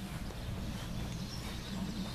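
Outdoor background noise: a steady low rumble with a faint bird chirp near the end.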